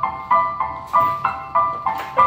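Digital stage piano playing a steady repeated pattern of bell-like chords, about three a second, in an instrumental passage with no singing.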